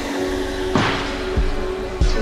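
Boom bap hip-hop instrumental beat: drum hits, one with a sharp snare-like crack about a second in, over a held sampled chord.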